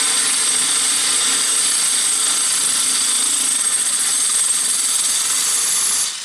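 DeWalt cordless drill running steadily, its 10 mm glass drill bit grinding into a glass bottle wetted with water. This is the final, larger bit boring the hole right through.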